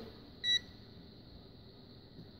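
A handheld 100 A AC/DC mini clamp meter gives one short, high beep about half a second in as its ZERO button is pressed. The beep confirms the meter is zeroing out a 0.34 A stray reading picked up in free air, and the display drops to 0.000.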